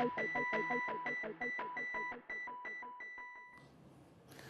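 Electronic TV theme music ending: a rapid repeating pattern of beeping tones, about four a second, fading out and stopping about three and a half seconds in.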